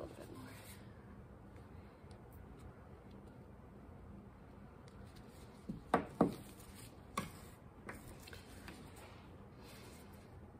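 Palette knife scraping and spreading stiff etching ink, a soft, quiet scraping, with a few sharper scrapes or clicks of the blade around six and seven seconds in.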